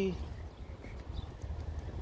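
Footsteps of a person walking on asphalt, over a low steady rumble.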